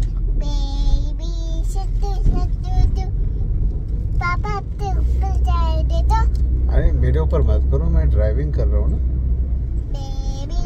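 A young girl's voice singing and chattering without clear words, over the steady low rumble of a car heard from inside the cabin. The rumble grows louder about halfway through.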